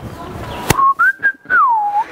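A person whistling. A single clear whistle starts just under a second in, glides up, holds, then slides down, just after a sharp click.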